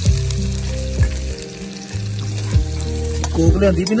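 Food sizzling as it fries in a pan on a portable gas stove, with some stirring, over music with a deep bass line. A voice starts just before the end.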